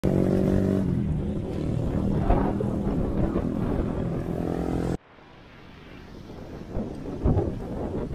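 Wind rumbling on a camera microphone while riding a road bike, with a motor vehicle's engine running nearby in the first half. The sound cuts off abruptly about five seconds in, then the wind rumble builds up again, with a couple of thumps near the end.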